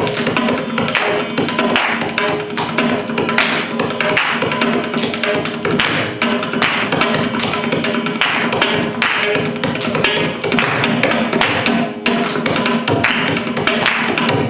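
Mridangam playing a dense run of rapid strokes over a steady drone.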